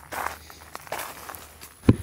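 Footsteps through brush and dry vegetation, with leaves and stems rustling against clothing, a step about every second, and a sharper knock near the end.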